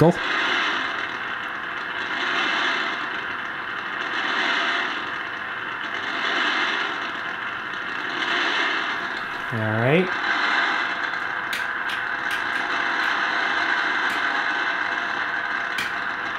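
Specific Products WWVC receiver's speaker playing static from WWV at 10 MHz, swelling and fading about every two seconds. This is the beat against a function generator set half a cycle per second off 10 MHz.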